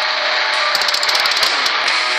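Electric guitar playing in a metal song. Near the middle, a rapid run of sharp, evenly spaced hits lasts under a second.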